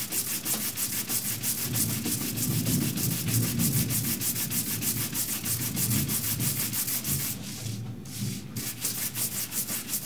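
Horsehair brush buffing paste wax on dyed leather by hand: quick, even back-and-forth strokes of bristles scrubbing over the waxed surface, polishing it to a gloss. The strokes let up briefly about three-quarters of the way through, then carry on.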